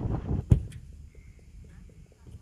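Wind buffeting the microphone, cut off by a single sharp knock about half a second in. After that comes a quiet outdoor background with a few faint ticks.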